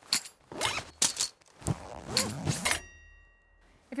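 A quick series of knocks and clacks, six or so in under three seconds, followed by a brief faint high ringing tone.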